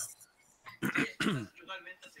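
A person clearing their throat: a short, sudden vocal burst about a second in over a video-call line.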